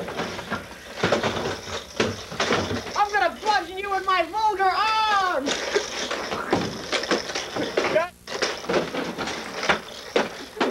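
A voice lets out a wavering, repeated cry for about two and a half seconds, starting about three seconds in. Around it are scattered knocks, clatter and rustling as people scramble about.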